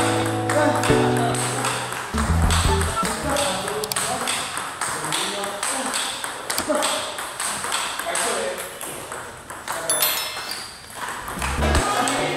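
Table tennis ball clicking sharply off rubber paddles and the table in a quick, even forehand warm-up rally, with background music underneath.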